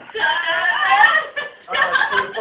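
A young woman's high-pitched squealing laugh, in a long burst, then a short pause and another burst near the end, with a short sharp click about a second in.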